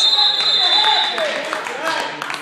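Referee's whistle blown in one long, shrill blast that stops about a second and a quarter in, over shouting voices.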